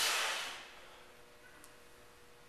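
A hard breath, a hissing exhale at the start that fades over about half a second, from a man straining through a pull-up; then only faint room noise.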